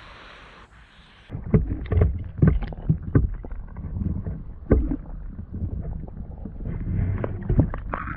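Water sloshing around a camera at the waterline as a swimming beaver reaches it and the camera dips under, with irregular muffled knocks and thumps against the housing starting about a second in.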